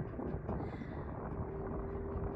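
Wind rumbling on the phone's microphone, with a steady hum setting in about halfway through.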